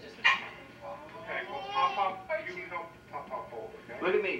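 A newborn baby fussing, with a few short cries that waver in pitch, heard through a TV speaker.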